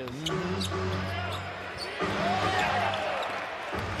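A basketball being dribbled on a hardwood court, a few scattered bounces over the steady background noise of an arena crowd.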